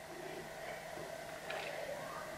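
Quiet room tone: a faint steady background hiss, with one faint short sound about one and a half seconds in.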